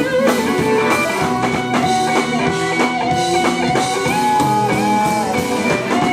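Live blues band playing: an electric guitar plays lead lines with held, bent notes over drum kit and band.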